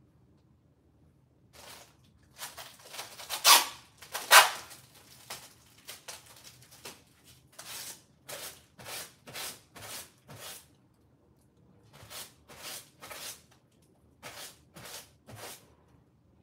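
Rustling as clothes are handled and sorted: a string of short rustles, two louder ones a few seconds in, then runs of evenly spaced rustles about two a second.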